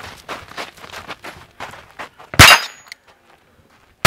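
A single sharp gunshot from an 1865 Smith & Wesson Model 1 revolver firing a .22 CB round, about two and a half seconds in, with a short ringing tail. Faint scattered clicks and scuffs come before it.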